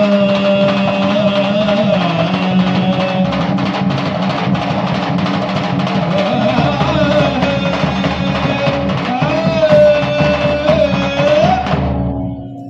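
Rajasthani folk music for Kalbeliya dance: steady drumming under a held, wavering melody line and a low drone. It stops abruptly at the very end.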